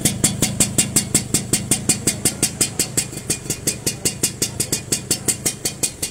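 Suzuki Sport 120 two-stroke single-cylinder engine idling, its exhaust note an even beat of about eight pops a second. The engine runs quietly: "rất im".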